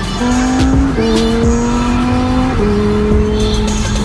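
Lamborghini Huracán Performante's V10 engine heard from inside the cabin, its pitch climbing under acceleration and dropping at an upshift about two and a half seconds in, with background music.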